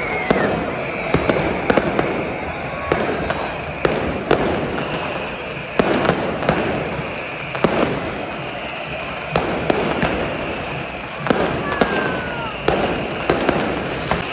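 Fireworks going off: irregular sharp bangs, about one or two a second, over a steady hissing bed, with a gliding whistle near the start and another about eleven seconds in.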